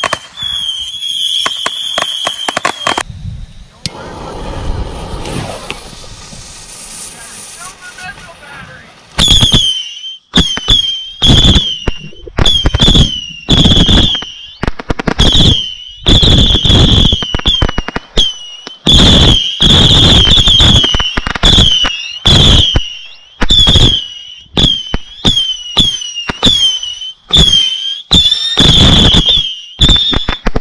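Cutting Edge Silver Missile Base firework firing whistling missiles in rapid succession. Each launch gives a sharp pop and then a short shrill whistle that dips in pitch and holds. The firing thins out about three seconds in and comes back as a dense, loud run of whistles from about nine seconds on.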